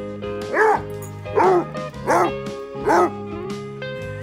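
Basset hound barking four times, about one deep bark a second, over background music.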